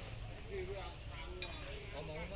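Faint background voices talking over a low steady rumble, with one sharp click about halfway through.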